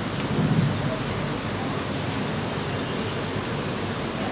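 Steady room noise: an even hiss with a low rumble underneath, swelling briefly about half a second in.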